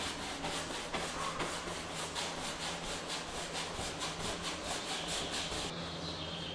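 Bristle paintbrush scrubbing oil paint onto a stretched canvas in quick, even strokes, about four a second.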